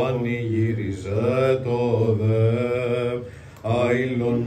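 A man chanting a Byzantine Orthodox hymn solo, holding long notes that turn slowly in pitch. He breaks off briefly about three seconds in and starts the next phrase near the end.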